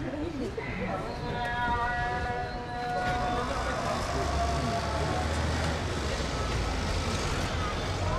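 Road traffic: a low vehicle-engine rumble that grows stronger about halfway through, with a held pitched tone for a few seconds and people talking in the background.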